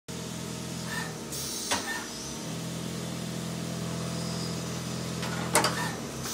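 Steady low hum of machine-shop machinery, with a sharp click a little under two seconds in and another near the end.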